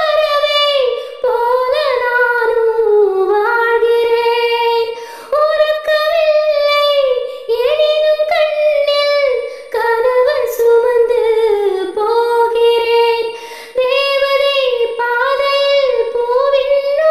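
A woman singing a Tamil film song solo, with no accompaniment, in a high voice. Her phrases are held and glide in pitch, with short breaks for breath every two seconds or so.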